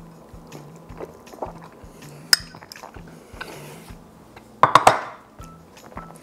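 Soft background music under tableware sounds: a single sharp clink of a fork on a ceramic bowl about two seconds in, then a louder clatter of several strokes near the end as the bowl is set down on the counter.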